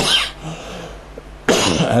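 A man coughing: one short, sharp cough right at the start, then another loud cough about a second and a half in that runs straight into his speech.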